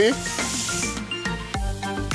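Shrimp sizzling in olive oil in a cast-iron skillet, fading out after about a second. Background music with a steady beat then comes in.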